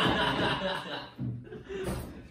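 Men laughing together, loudest through the first second and then trailing off.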